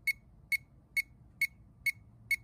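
Ancel PB100 circuit probe beeping: short, high electronic beeps repeating evenly about twice a second, five in all, while its tip is on a live circuit reading about 12 volts.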